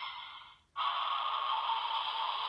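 Electronic sound effects from an Ultraman Z DX role-play toy's small speaker. One sound fades away, then a new, louder effect cuts in suddenly just under a second in and carries on.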